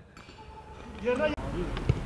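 Faint, distant voices calling on a football pitch about a second in, over a low background rumble. A short dull thump near the end, a foot striking the football.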